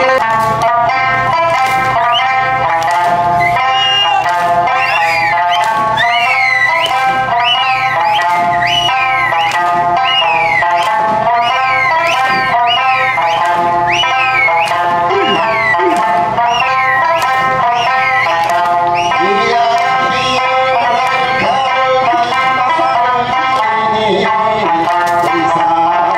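Okinawan Eisa music played over PA speakers: a stepping sanshin melody with taiko drum strikes. Through the middle there is a string of high falling whistles, about one a second.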